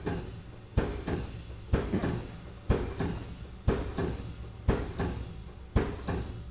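Hydrostatic test pump working in steady strokes, a sharp knock about once a second, each with a short fading tail. The strokes are building water pressure in the test cylinder toward 5,000 psi.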